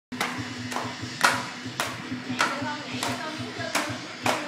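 Two round household lids clashed together like cymbals by a child, in an even beat of about two strikes a second, each strike bright and briefly ringing. A steady low hum and beat of music runs underneath.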